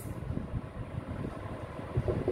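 Quiet, uneven low rumble of background noise, with faint scratches of a marker writing on a whiteboard.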